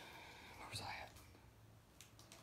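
Near silence with a brief faint whispered voice about a second in.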